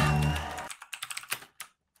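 Typing on a computer keyboard: a quick run of key clicks after a voice fades out, stopping about a second and a half in.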